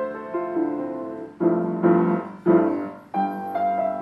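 Knabe WMV121FD upright acoustic piano playing a slow, gentle pop ballad melody. Partway through, three loud chords are struck in quick succession, the last one ringing away before lighter single notes pick up again near the end.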